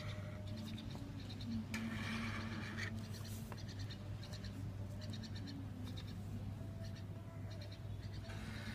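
Artline 509A marker scratching across paper, the clearest stroke lasting about a second near two seconds in, with fainter scratches later, over a steady low hum.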